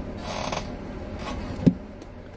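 Handling noise as phones are swapped: a short scraping rustle, a fainter one about a second later, then a single sharp knock near the end, as of a phone set down on a counter.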